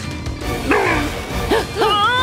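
Cartoon background music with several short yelping calls that rise and fall in pitch, starting about a second in.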